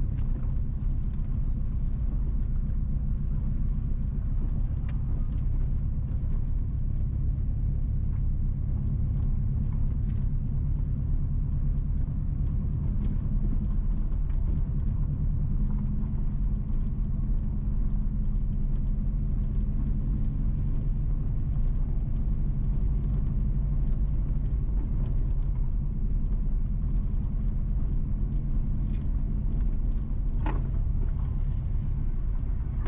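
A car driving slowly on a rough road: a steady low rumble of engine and tyres, with occasional faint ticks and knocks.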